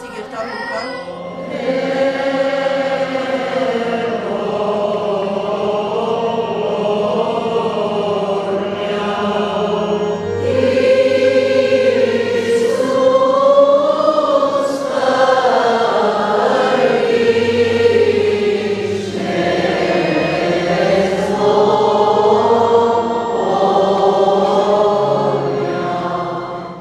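Church choir singing a slow liturgical chant, voices holding long notes over steady low sustained tones. It swells louder about ten seconds in.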